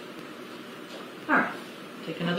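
Steady low background hiss, with one short loud vocal sound about a second and a quarter in.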